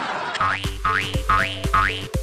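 Cartoon-style boing sound effect, four rising glides in a row about half a second apart, over backing music with a bass beat.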